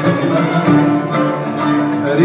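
Traditional Arabic orchestra playing an instrumental passage: bowed strings holding steady notes over plucked strings.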